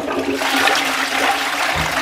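Toilet flushing: a steady rush of water swirling down into the bowl.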